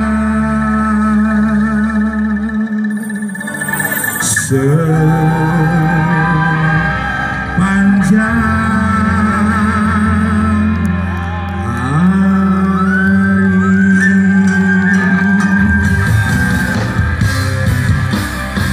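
Live band music from the stage sound system, heard from within the crowd, over a steady bass. A lead line of long notes wavers and bends, sliding up into new notes a few times.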